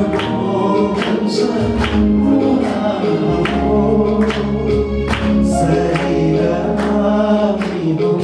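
A man singing a Nepali Christian worship song into a microphone over band accompaniment with a steady beat.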